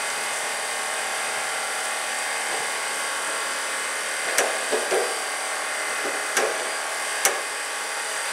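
BOLA Junior bowling machine running, its motor-driven throwing wheels spinning with a steady whine. Several short knocks come about halfway through and again later, as balls are dropped into the wire hopper.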